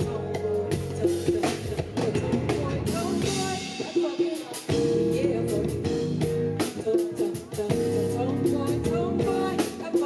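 Live band playing a song on drum kit, bass guitar and keyboard, with a woman singing into a microphone. The drums keep a steady beat, and the bass drops out briefly about four seconds in.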